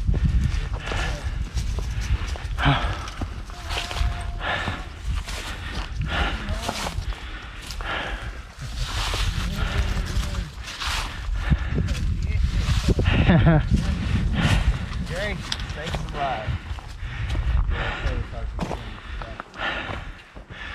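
Footsteps crunching along a dry, leaf-strewn dirt and sandstone trail, with wind rumbling on the microphone and snatches of indistinct voices.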